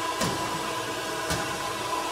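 Steady background hum with a faint steady tone, and two brief soft bumps about a second apart.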